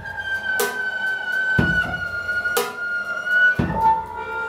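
Free-improvised jazz on bowed double bass and drum kit: one long high bowed note slides slowly downward while the drums answer about once a second, a low thud alternating with a cymbal crash.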